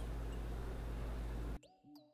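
Steady low hum and room noise that cuts off abruptly about a second and a half in. A short run of high, sliding whistle-like notes follows: an edited-in sound effect.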